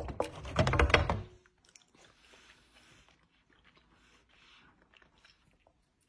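Spoon stirring orecchiette in a metal frying pan: a quick run of scraping and clacking that stops about a second and a half in.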